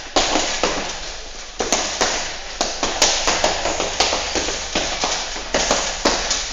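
Punches landing on a heavy punching bag: sharp smacks in irregular combinations, one or two a second and sometimes two in quick succession, each trailing off in room echo.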